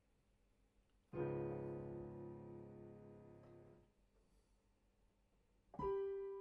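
Piano playing: a full chord struck about a second in and held, dying away over nearly three seconds. A short silence follows, then the playing starts again with new notes near the end.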